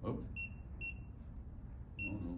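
TENS 7000 unit's keypad beeping as its buttons are pressed: two short, high beeps about half a second apart, then another at the very end, each press stepping the pulse-rate setting.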